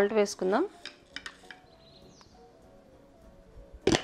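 A few light clinks of a metal utensil against a steel bowl about a second in, then near quiet, and a sharper knock just before the end.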